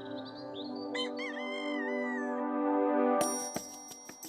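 A rooster crow sound effect about a second in, a pitched call that bends and falls over about a second and a half, heard over sustained orchestral chords as a wake-up cue for morning. Near the end the music turns brighter, with light ticks.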